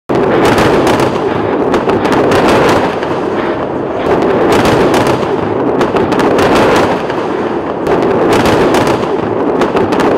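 A loud, dense run of explosive bangs and cracks over a constant rumble, with no let-up.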